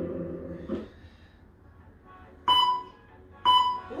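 Background music fades out within the first second, then an interval timer gives two short, steady beeps about a second apart: the countdown marking the end of a work interval.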